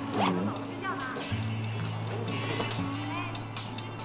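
Soft background score of held low notes that shift pitch every second or so, under spoken dialogue, with a short laugh near the start.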